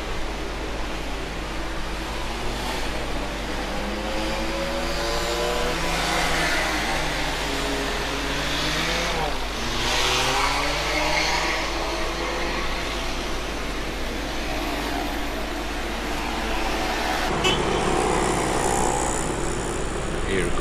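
Close street traffic: the engines of cars and pickup trucks passing and pulling away, their pitch rising and falling as they speed up and slow down, over a steady low rumble of the road.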